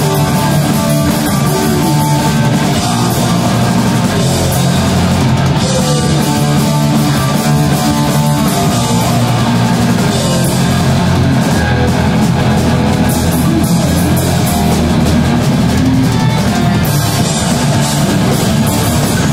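Hardcore punk band playing live: distorted electric guitar, bass guitar and drum kit, loud and continuous.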